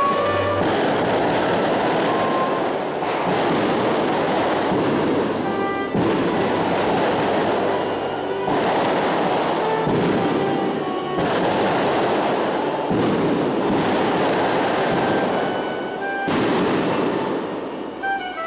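A loud rushing noise in surges of two to three seconds with short breaks, nearly burying soprano saxophone music whose notes show only faintly through it.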